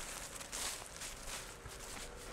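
Footsteps in boots crunching through dry fallen leaves, a few steps about half a second apart.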